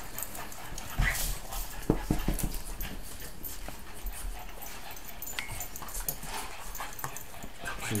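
Small dog licking and mouthing a person's hand and panting, with a few soft knocks about one and two seconds in.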